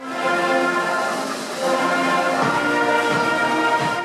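School concert band playing, brass and woodwinds holding steady sustained chords.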